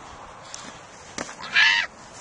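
A single short, loud, harsh cry about a second and a half in, just after a sharp click.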